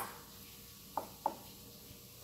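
Stoneware mugs knocking lightly together twice, two short clinks a quarter-second apart about a second in, over quiet room tone.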